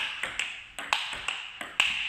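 Table tennis counter-hitting rally: the celluloid-type plastic ball clicking sharply off the table and off the bats in quick alternation, one bat faced with a TSP Super Spin Pips short-pimpled rubber. About three clicks a second, each with a short ping.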